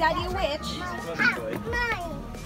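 Children's voices and chatter, with two short high-pitched cries in the second half, over music in the background.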